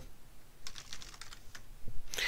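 Computer keyboard typing: a short run of irregularly spaced, fairly soft keystrokes as a word is typed.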